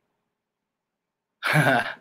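Silence, then about one and a half seconds in a short, loud burst of a man's voice, half a second long: a throat-clearing or laughing sound rather than words.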